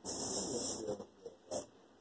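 Plastic shopping bag rustling as items are dug out of it: a dense rustle for about a second, then a short one about a second and a half in.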